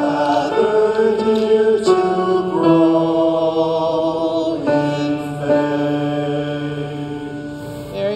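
Voices singing a newly taught hymn refrain in slow, held notes, the last note held for about three seconds and fading near the end.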